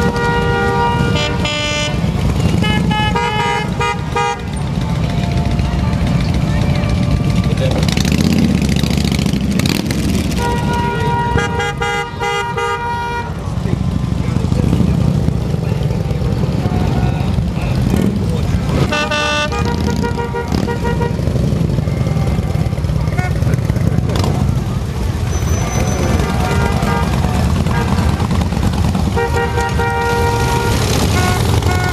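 A procession of large touring motorcycles riding past at low speed with their engines running, and horns honking in several bursts of a second or two each.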